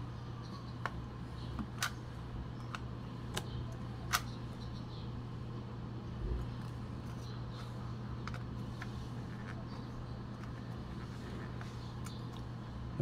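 Sharp little clicks and taps from a plastic Single-8 sound film cartridge being handled and turned by hand, several in the first four seconds and fainter ones later, over a steady low hum.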